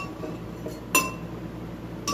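Metal clinks from a small hand-held citrus press being worked to squeeze an orange half: a light click at the start and one sharp clink with a short ring about a second in.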